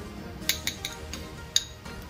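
A few light metallic clinks of a wire-mesh strainer against a stainless steel mixing bowl as ginger juice is strained in, the sharpest about one and a half seconds in.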